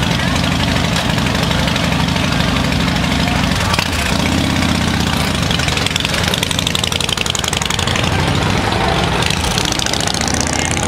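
Cruiser motorcycle engines idling with a steady, low beat, one of them revving briefly about four seconds in as a bike pulls away from the curb.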